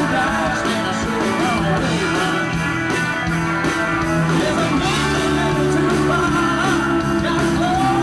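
Live country band playing a song, with electric guitars over bass and drums at a steady level.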